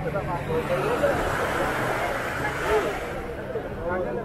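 Beach ambience: people talking in the background over the steady low hum of an idling motorboat engine, with the wash of small waves swelling in the middle.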